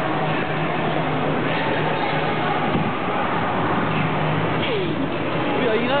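Steady din at an ice rink: skate blades gliding and scraping on the ice under a wash of crowd chatter, with a steady low hum beneath. Near the end, one voice slides down and up in pitch.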